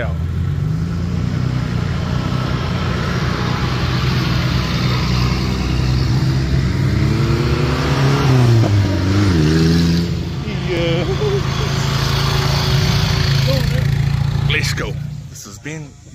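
Engine of a lifted off-road 4x4 running under throttle as it drives along a dirt track. It revs up and back down in the middle and drops away near the end.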